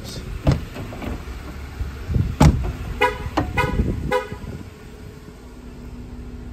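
Door of a 2024 Jeep Wrangler Rubicon X unlatched and opened, with its power running boards deploying under a low motor rumble and a heavy thud about two and a half seconds in. A few short beeps follow about a second later.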